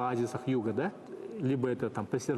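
A man's voice speaking, with a short pause about a second in.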